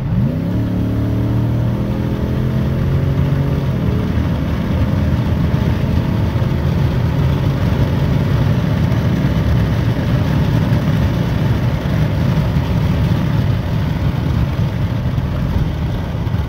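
A cammed, full-bolt-on Ram pickup's engine at full throttle, heard from inside the cab: its pitch jumps at the start and climbs over the first few seconds. It then runs at high revs under a steady rush of wind and road noise as the truck accelerates past 100 mph.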